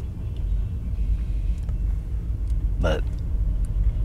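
Steady low rumble of a car idling, heard from inside the cabin, with a brief vocal murmur from the man a little before three seconds in.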